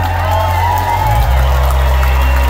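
Live rock band playing a slow vamp: held bass notes that shift about a second in, with a higher gliding line over them.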